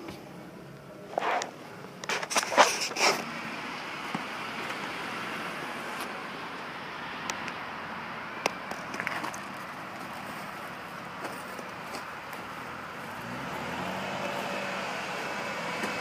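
2007 Ford Taurus car door being unlatched, opened and shut, a quick run of clicks and knocks in the first few seconds. Then steady outdoor vehicle noise, with a faint vehicle engine note rising near the end.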